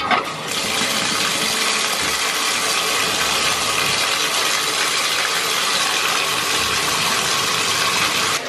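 Bathtub faucet running, water pouring steadily into the tub. It starts abruptly at the outset and holds at a constant level.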